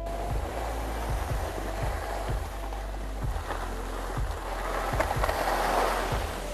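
Skis sliding and scraping over packed snow in a snowplow, a steady hiss that swells near the end. Background music with a low, regular beat runs underneath.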